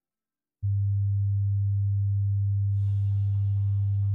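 A loud, steady low tone starts abruptly about half a second in and holds without change. About three seconds in, soft ambient music with long sustained notes comes in over it.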